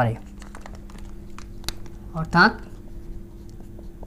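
Marker pen writing on a whiteboard: faint, short scratchy strokes, over a steady low hum. A short spoken syllable comes about two seconds in.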